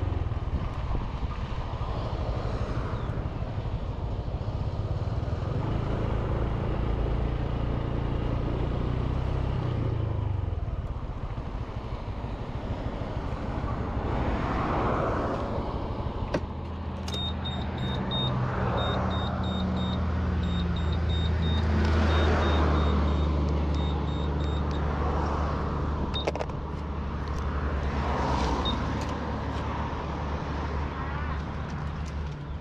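Motorbike engine running on the move, with wind and road noise that swell and ease several times. A high electronic beeping repeats for several seconds about halfway through.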